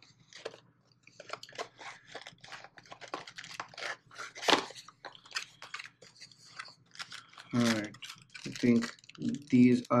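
Hands opening a small cardboard box and pulling out a plastic-bagged speaker set: a quick run of rustles, scrapes and crinkles. A man's voice comes in briefly near the end.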